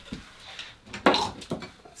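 Woodcarving tools clinking and knocking together as they are picked through and lifted, with a louder clatter about a second in.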